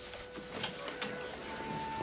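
Faint background music: one held note that gives way to a higher held note about halfway through, with scattered small clicks and rustles.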